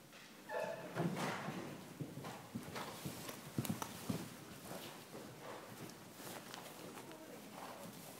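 Hoofbeats of a horse cantering over an arena's sand surface, a run of irregular thuds that are loudest in the first half. A brief pitched call sounds about half a second in.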